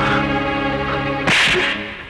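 Film fight sound effect: a sharp, whip-like swish of a punch about a second and a half in, fading away after it. A steady held tone before it cuts off just as the swish lands.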